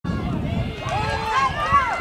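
Spectators in the stands shouting and calling out, several voices overlapping, starting about a second in.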